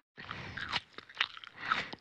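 Chewing and crunching sound effect: a run of irregular crunches and clicks with short gaps between bites, the sound of flesh being eaten.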